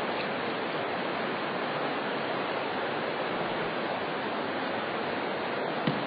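Steady rushing noise of running water, even and unbroken, with a faint knock near the end.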